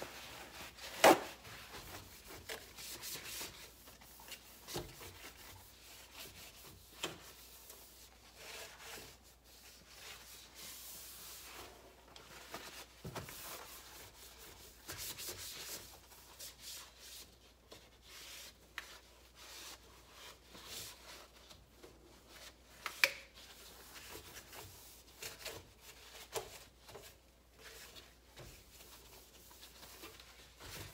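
Cloth rubbing and wiping across a powder-dusted glass-ceramic electric stovetop in irregular strokes. A sharp tap sounds about a second in, and another a little past the middle.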